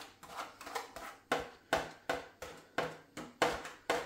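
A fork scraping and tapping peas and carrots out of a plastic ready-meal tray onto a plate, in repeated short strokes about two or three a second.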